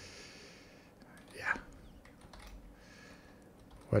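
Quiet room with a soft breathy noise at the start, a muttered "yeah" about a second and a half in, and a few faint computer keyboard keystrokes.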